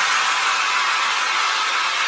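A break in an electronic dance track: the kick drum and bass drop out, leaving a steady synthesized white-noise hiss.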